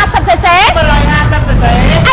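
Motorcycle engine running with a low rumble that comes up about a second in, under a woman's speech.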